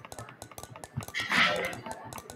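Online spinner wheel ticking as it spins past its segments: a rapid run of quick clicks. A short breathy hiss comes about a second and a half in.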